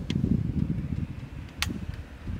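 Flintlock hammer of a Pedersoli Northwest trade gun being cocked: a faint click just after the start and a sharp metallic click about one and a half seconds in. Wind rumbles on the microphone throughout.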